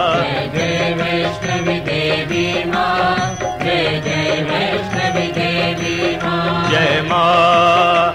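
Hindu devotional bhajan music: a melodic line with wavering pitch over a steady accompaniment.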